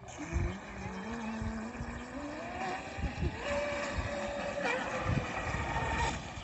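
Motor of a fiberglass RC catamaran boat whining as it speeds up: the pitch climbs over the first few seconds, then jumps up and holds steady twice near the end as the boat runs fast across the water.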